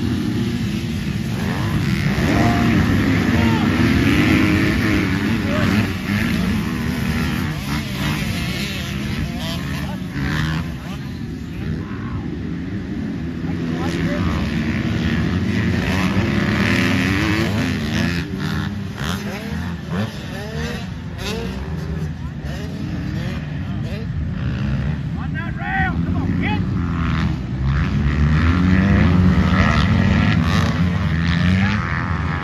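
Several motocross dirt bikes racing around a dirt track. Their engines rev up and down over and over with rising and falling whines.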